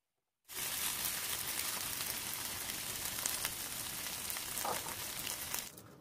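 Bread halwa sizzling in a nonstick pan as it is stirred with a silicone spatula, with small crackles through the sizzle. It starts abruptly about half a second in and cuts off shortly before the end.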